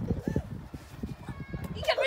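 Plastic toy spades digging into damp sand: a quick run of short scrapes and soft thuds. A child's voice calls out near the end.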